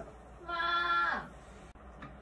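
A person's voice holding one drawn-out, sung or hummed note for about two-thirds of a second, bending down in pitch as it ends.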